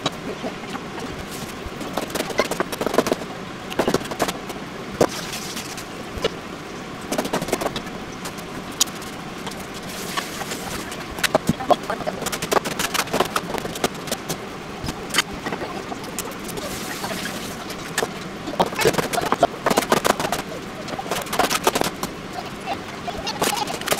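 Kitchen knife chopping green peppers and then Japanese long onion on a plastic cutting board: quick runs of sharp knocks of the blade against the board, broken by short pauses.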